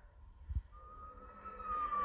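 Film soundtrack playing through a phone's small speaker: a single siren-like tone that starts under a second in and glides slowly downward. A low thump comes just before it.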